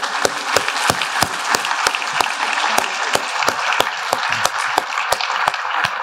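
Audience applauding; the clapping starts all at once and carries on steadily.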